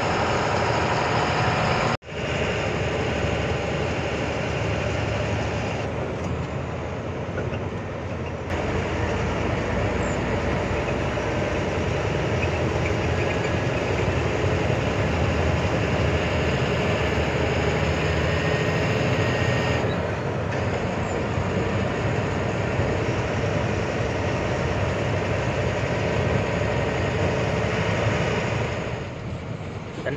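Truck engine and road noise heard from inside the cab while driving, a steady rumble with faint humming tones. The sound cuts out for a moment about two seconds in.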